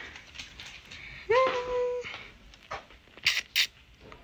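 A woman's drawn-out "Yay!", rising then held, followed near the end by two short hissing rustles about a third of a second apart, with faint scattered clicks.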